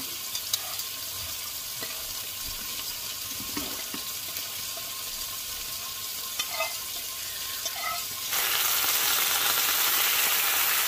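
Lamb shoulder chops sizzling as they sear in a frying pan, a steady hiss with a few light clicks of a utensil against the pan. The sizzle becomes louder and closer from about eight seconds in.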